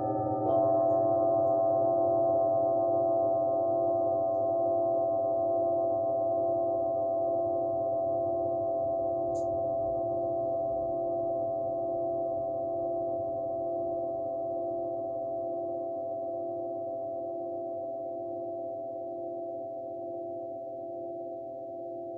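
Several large metal singing bowls ringing after a mallet strike about half a second in, their overlapping steady tones slowly fading. One of the lower tones wavers in a slow, regular pulse.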